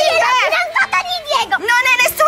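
Young girls squealing and shouting in high-pitched voices as they scuffle in play.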